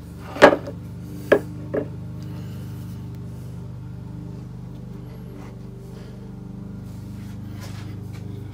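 Three sharp metallic knocks in the first two seconds as the dial indicator setup is handled against the lathe test bar, the first the loudest, then a steady low hum.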